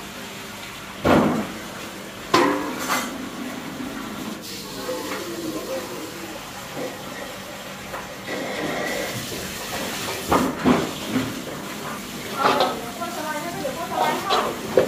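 Stainless-steel bowls and pans clanking as they are handled and rinsed, with several sharp metal clanks and water running from a tap.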